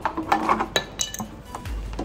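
Red plastic petrol jerry can being handled as its cap is worked open, giving several sharp clicks and clinks in the first second or so.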